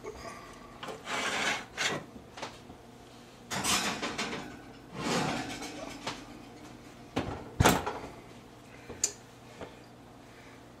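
A cast iron baking dish is lifted off an electric stovetop and slid into an oven. Several short scrapes and rubs of the pan and the oven rack come first, then one sharp clunk as the oven door shuts, about three quarters of the way through.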